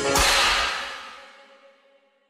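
The final hit of a pop-rock song: a bright, noisy crash with a held note under it, fading away to silence over about a second and a half.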